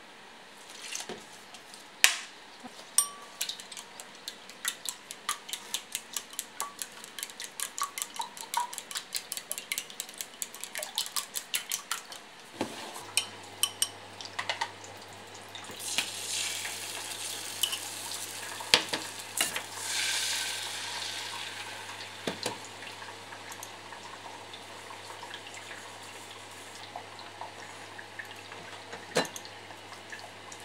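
Eggs beaten with chopsticks in a glass bowl: rapid clicking of the chopsticks against the glass for about ten seconds. Then beaten egg is poured into a hot non-stick frying pan and sizzles for several seconds, with a few light knocks of chopsticks on the pan, over a steady low hum.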